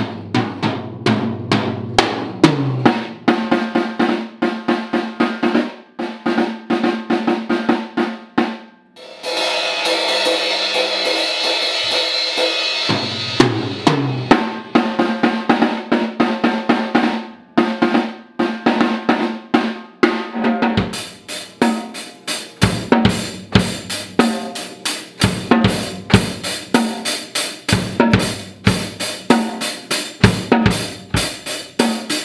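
Acoustic drum kit played with sticks: snare, toms, bass drum and cymbals in a steady run of beats. About a third of the way in there are a few seconds of continuous sound with no separate strokes. The last third is faster, with frequent bass drum hits.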